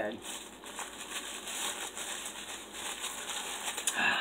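Quiet, irregular crinkling and rustling of wrapping material as a tightly wrapped small packet is unwrapped by hand.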